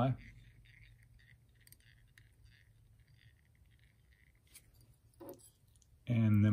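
Near silence with faint, soft scratchy handling sounds as tying thread is wrapped from a bobbin around the head of a fly in the vise. A brief low sound comes about five seconds in.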